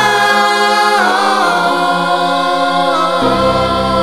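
Music: sustained wordless choir chords in a gospel-style worship arrangement, shifting to a new chord about a second in and again about three seconds in, where a deep bass comes in.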